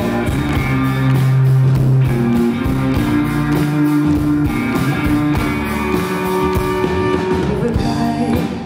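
Live rock band playing, with guitar and drums.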